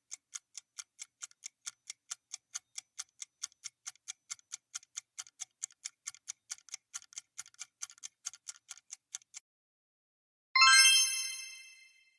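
Countdown-timer sound effect: an even run of rapid ticks, about four or five a second, that stops about nine seconds in. About a second later a bright chime of several tones rings out and fades, marking the end of the countdown and the reveal of the answer.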